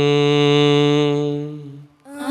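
A man's chanting voice holding the last note of a liturgical prayer, one long steady note that fades out near the end.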